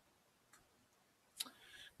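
Two faint laptop keyboard key clicks, the second sharper and louder about a second and a half in, against near silence.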